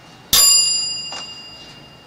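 A 12-volt electric bell, run from a generator's current boosted by a transistor, strikes once and rings out with a few clear high tones that fade over about a second and a half.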